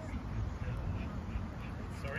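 Ducks quacking in a series of short calls over a steady low rumble from the flooded river.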